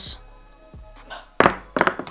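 Ping-pong balls landing on a tabletop about one and a half seconds in: a sharp knock followed by a quick run of light bouncing clicks, over quiet background music.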